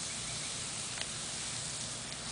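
Lawn sprinkler spraying water in a steady hiss, with one faint click about a second in.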